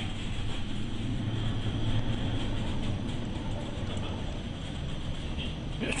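Steady low rumble and rushing noise of a ship driving through heavy storm seas, with wind and breaking waves over the bow.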